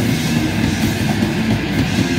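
Hardcore punk band playing live: distorted electric guitar and bass over fast drumming, loud and continuous.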